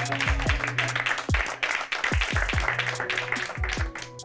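A small group of people applauding over background music with a deep, repeating bass beat; the clapping dies away near the end.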